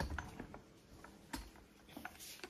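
Quiet handling noise: a few faint clicks near the start and a soft knock about a second and a half in, over low room tone.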